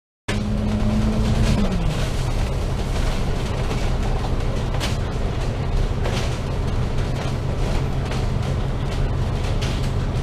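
Interior sound of a KMB double-decker bus on the move, heard from the upper deck: the diesel engine's steady low drone with a few rattles from the body. The sound cuts in just after the start, and the engine's note drops about a second and a half in.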